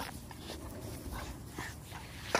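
Young American bully (pit bull) dogs play-fighting on grass: faint short dog noises and scuffling.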